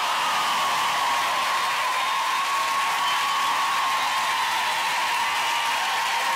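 Studio audience applauding steadily at the end of a live pop song.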